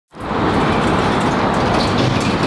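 Steady city street traffic noise, fading in quickly from silence at the start.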